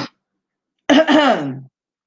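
A woman clearing her throat once, about a second in: a short voiced clear that falls in pitch.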